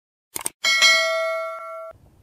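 Subscribe-animation sound effect: a quick mouse click, then a bright notification-bell ding that rings out for over a second and cuts off suddenly.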